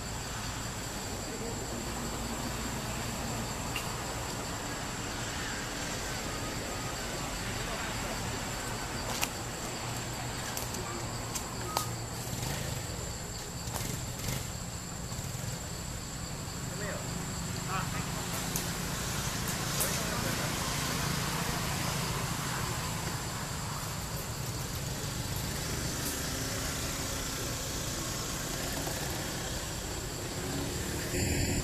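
Steady background din of distant traffic, with a low engine hum and faint, indistinct voices over a thin steady high tone. A few faint clicks come through about 9 and 12 seconds in.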